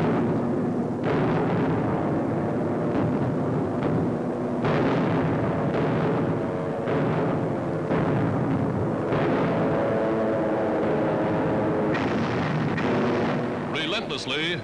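Newsreel soundtrack of aerial bombs exploding: a string of about ten booms, each a second or two after the last, over a steady drone.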